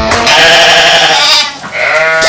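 A comic animal-cry sound effect: one long, wavering bleat-like call that breaks off about a second and a half in.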